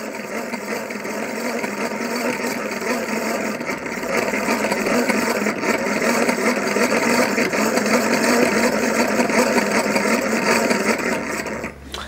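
Vintage hand-cranked permanent-magnet generator being cranked steadily by hand, its brass gear train running with a continuous mechanical whir. It gets a little louder about four seconds in and stops just before the end.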